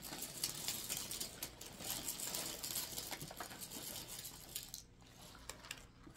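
Crinkling of a plastic cereal bag and the light patter of flakes being poured and handled, a quiet irregular rustle that fades out near the end.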